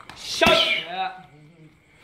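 A gloved strike smacks a Thai pad about half a second in, under a loud, sharp shout, followed by a lower, shorter voice.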